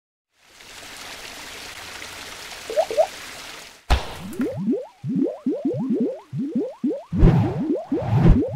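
Cartoon sound effects for an animated paint-splash logo: a steady hissing whoosh for about three seconds, a sharp hit, then a quick run of short upward-sliding blips, several a second, with heavier low thuds near the end.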